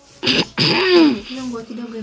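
A person clearing their throat: a short harsh burst, then a longer rasping sound that falls in pitch.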